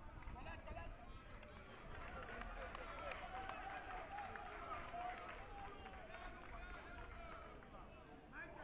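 Faint, indistinct shouts and calls of several football players and coaches overlapping across an open pitch, with a few sharp knocks of the ball being kicked and a low rumble underneath.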